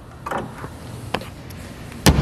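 Light clicks and rattles from the hood prop rod of a 2014 Dodge Dart being unhooked and stowed in its clip as the hood is lowered, with one sharper click a little past a second in.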